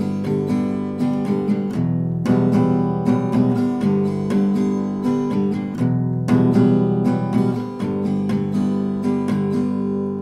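Acoustic guitar strummed in a steady rhythmic pattern, going back and forth between F-sharp and A chords, with short breaks at the chord changes.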